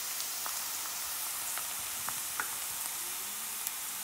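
Chopped onions and garlic frying in hot oil in a stainless steel pan: a steady sizzle with a few scattered crackles.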